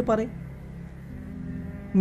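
Soft background music: a held low drone chord that shifts to new notes about halfway through, following the last spoken word at the start.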